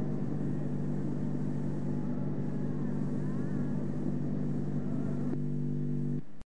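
A steady low musical drone with tape hiss, sounding on at the close of a Hindustani classical vocal recording of Raga Bihagda. A faint gliding tone passes through about halfway. Near the end the drone suddenly turns clearer.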